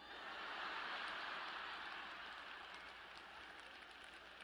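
An audience laughing at a joke, swelling in the first second and slowly dying away.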